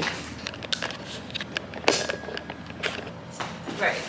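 Handling noise: a string of sharp clicks and knocks with some rustling as the camera is moved and set down and things are packed into a suitcase.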